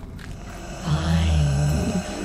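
A deep, low sound effect in a horror soundscape. It swells in under a second in, holds steady for about a second, then fades.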